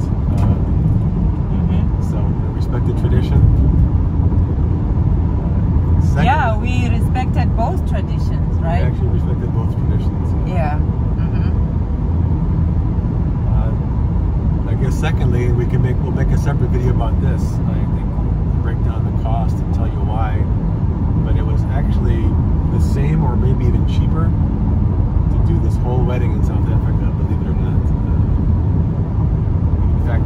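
Steady low road and engine rumble inside a moving car's cabin. Voices come and go over it.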